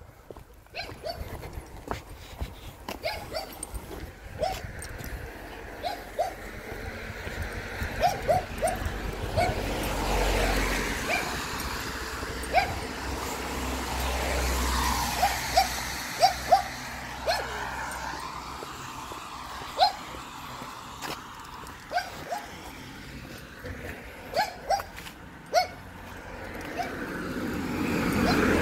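Dogs barking, many short barks scattered irregularly throughout, set off by a dog being walked past. A car passes in the middle.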